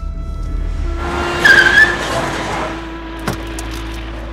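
Car braking hard to a stop with a short, loud tyre squeal over background music; a single sharp knock follows about three seconds in.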